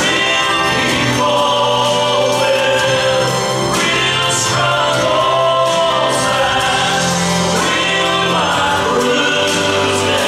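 A man singing a gospel song into a handheld microphone over musical accompaniment, with long held notes.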